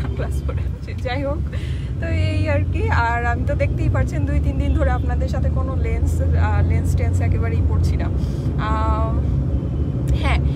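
Steady low rumble of a car's engine and road noise heard inside the cabin, a little stronger through the middle, under a woman's talking.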